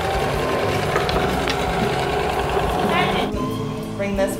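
Baby Lock electric sewing machine running under foot-pedal control, stitching two pieces of fabric together in a straight seam. It runs steadily, then stops a little before the end.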